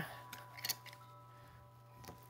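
A few faint short clicks and scrapes from a Vino Pop air-pump wine opener as its needle is pushed down into a wine bottle's cork, over a steady faint hum.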